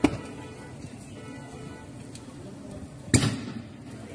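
Two sharp explosive bangs from the street fire, one at the very start and one about three seconds later, each trailing off in a short echo.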